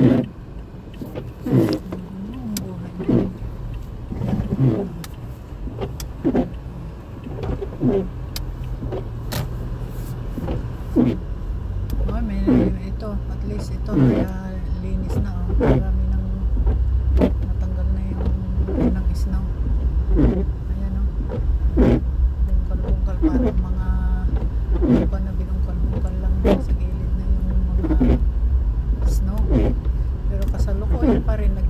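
Car windshield wipers sweeping back and forth over a snowy windshield, about one stroke every one and a half seconds, over the car's steady low running hum. The low road and engine noise grows louder from about halfway through as the car gets moving.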